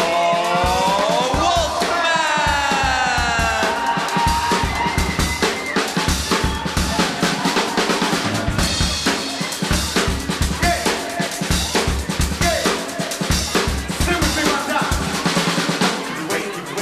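Drum solo on a rock drum kit: fast runs of bass drum, snare and cymbal hits with rolls. A long falling pitched sound rides over the drums about two to four seconds in.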